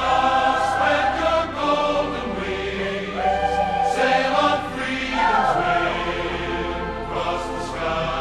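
Choir singing held chords over instrumental accompaniment, with a few sharp bright accents, including one near the middle and one near the end.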